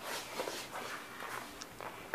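Faint shuffling and handling sounds of someone moving about, over low steady room noise.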